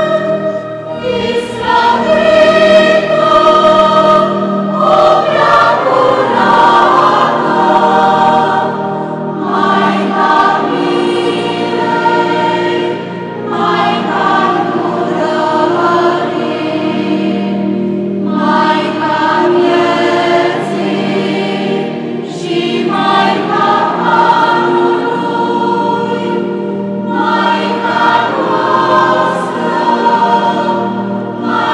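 A church choir singing a hymn in phrases of about four to five seconds, with short breaks between phrases.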